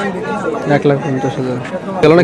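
Speech only: people talking over one another.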